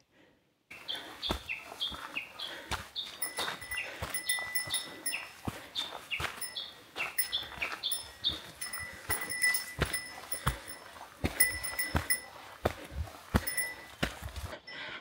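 A hiker's footsteps on trail steps, irregular knocks about twice a second, with a small bell on the pack, typically a bear bell, jingling briefly with each step.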